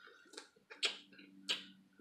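Close-up mouth sounds of eating crab: three sharp smacking clicks at the lips over about a second, as crab meat is sucked from the fingers.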